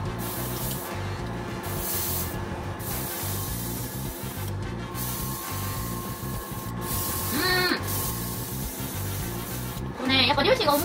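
Airbrush spraying thinned holographic glitter paint, hissing in a series of bursts of a second or two with short breaks between as the trigger is pressed and released.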